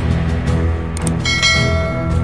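Background music with a click about a second in, followed by a ringing bell chime: the click-and-notification-bell sound effect of a subscribe-button animation.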